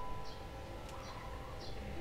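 A quiet stretch with one light click about halfway through, from hand handling of a Yashica TL-Electro film camera, and short faint high chirps in the background about once a second.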